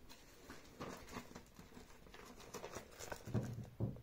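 Rustling and crackling of a paper printout in a clear plastic sheet protector as it is picked up and handled, with a couple of dull thumps near the end.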